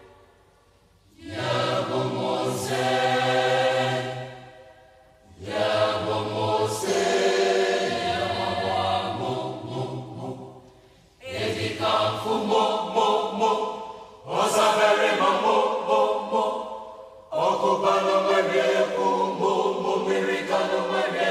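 Outro music: a group of voices singing a chant-like song in phrases of about three seconds, with brief pauses between the phrases.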